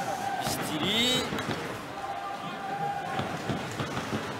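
Ice hockey rink sound: scattered knocks of sticks and puck on the ice and boards, with arena crowd noise and a brief voice about a second in.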